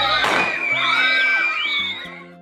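A class of young children shrieking and cheering over background music. A short burst of noise comes about a quarter second in, and the cheering fades near the end, leaving the music.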